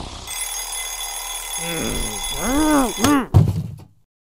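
Cartoon sound effects: a mechanical alarm clock's bell ringing, a voice making several rising-and-falling groans, then one loud thump as the ringing cuts off, the clock being knocked off or silenced.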